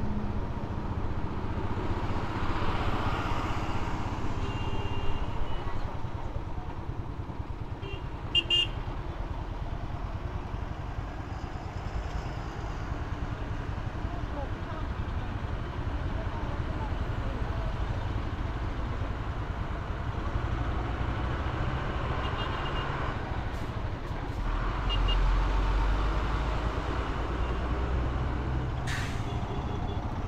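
Motorcycle engine running at low speed in dense traffic, with other motorbikes and trucks around. Short horn toots come about eight seconds in and again in the later part, and a heavier low rumble swells for a few seconds near the end.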